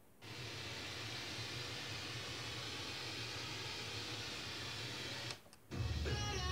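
Steady FM static hiss from a Kenwood KT-1100D stereo tuner heard through its speakers, with a low hum underneath, while the tuner sits off a clear station. Near the end it cuts out for a moment as the tuner switches, and music from the next station starts.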